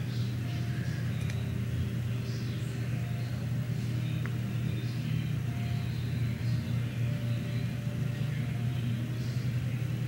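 A steady low hum runs at an even level throughout, with faint scattered rustles as hands work hair at the back of the head.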